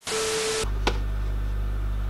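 A half-second burst of TV-static hiss with a steady beep under it, a glitch transition sound effect. It cuts off into a steady low hum, with a single click a little under a second in.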